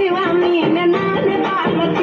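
A song playing: a singing voice with a gliding, ornamented melody over a dense instrumental backing.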